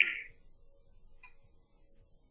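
Carom billiard balls colliding in a three-cushion shot: one sharp click with a brief ring, then a much fainter click about 1.3 s later.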